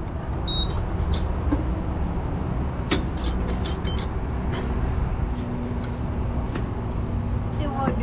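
Gas pump dispensing E85 into a motorhome's tank, a steady low rush of fuel flowing through the hose and nozzle. A short beep from the pump's keypad sounds about half a second in, and a few light clicks follow a few seconds later.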